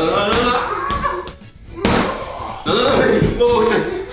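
A large inflatable exercise ball struck with a sharp slap about two seconds in, amid voices calling out.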